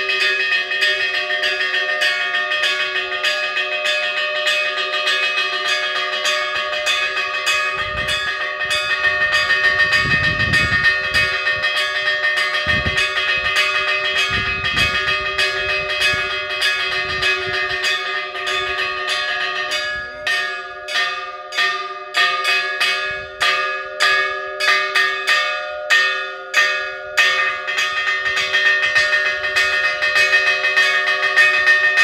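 Church bells of the parish church of San Marcos in Agulo hand-rung in a rapid festive repique, quick strikes ringing over the sustained tones of several bells. About two-thirds of the way through, the pattern changes to louder strokes spaced more widely apart. This is the Easter repique announcing the Resurrection.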